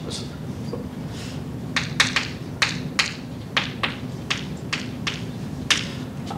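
Chalk writing on a blackboard: about a dozen sharp, irregular taps and short strokes of the chalk against the board, over a steady low room hum.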